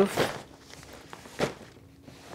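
Brief rustles of a waterproof nylon compression sack being lifted and handled, with one clear swish about one and a half seconds in.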